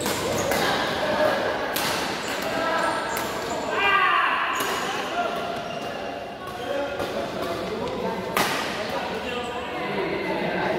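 A badminton rally: rackets striking the shuttlecock in a string of sharp hits echoing around a large hall, the loudest hit near the end.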